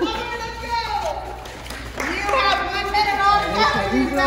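Several women's voices talking and calling out over one another, echoing in a school gymnasium, busiest in the second half.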